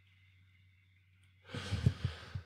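Near silence, then about one and a half seconds in, a man's breathy sigh close to the microphone.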